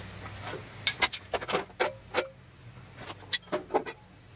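Aluminium belt-grinder attachments being handled and set down: an irregular run of sharp metallic clicks and clinks, a couple ringing briefly.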